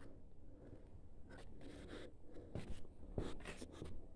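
Soft scuffs and scrapes of footsteps on gritty concrete, mixed with rustle from the handheld camera, coming thicker in the second half.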